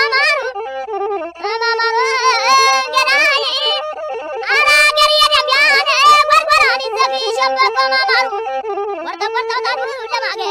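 Amhara traditional qirarto and fukera music: a high, heavily ornamented vocal line with a wavering pitch, sung in long phrases with short breaks between them.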